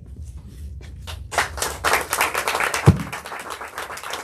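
Small audience applauding, the clapping swelling about a second in. There is a single low thump about three seconds in.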